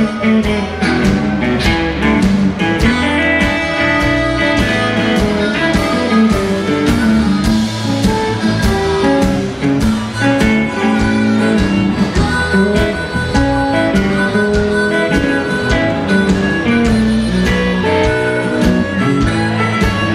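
Live blues band playing an instrumental passage: electric guitar and harmonica over bass and a steady drum beat.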